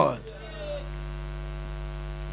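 Steady electrical mains hum, a low buzz with many even overtones, left bare in a pause; in the first half second a man's amplified voice dies away in the hall's echo.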